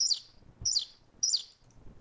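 A bird chirping: three short, high calls about two-thirds of a second apart, each sliding down in pitch.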